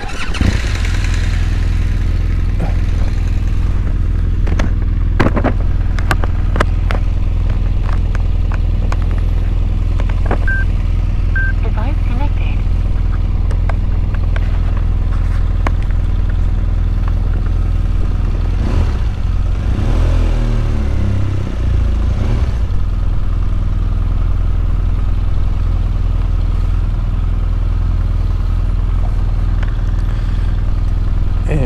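BMW R1200GS boxer-twin engine running at low revs as the motorcycle rides slowly over dirt, with scattered knocks and clicks from the bike over the rough ground. About twenty seconds in, the engine note wavers and shifts briefly.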